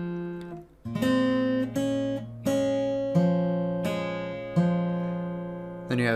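Steel-string acoustic guitar with a capo, played fingerstyle at a slow teaching pace. A ringing note fades out, then single plucked notes follow from about a second in, each left to ring over the next.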